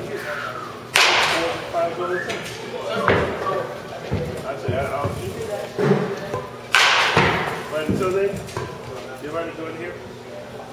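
Baseball bat hitting pitched balls in a batting cage: two sharp cracks, about a second in and again near seven seconds, with softer thumps in between.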